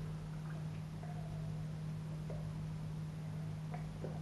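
A man taking a sip of stout from a glass, with a few faint small swallowing and glass sounds over a steady low hum in a quiet room.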